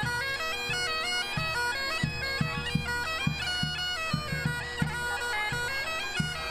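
Highland bagpipes playing a tune over their steady drones. A drum is struck along with it from a little over a second in, a few beats a second.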